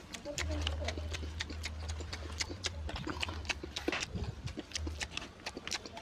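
Close-up eating sounds of chewing a mouthful of mutton curry and rice: wet mouth and lip smacks in quick, irregular clicks. A steady low hum runs under the first half.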